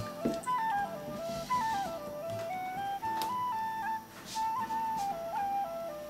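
Background music: a single flute playing a slow melody that moves in small steps up and down.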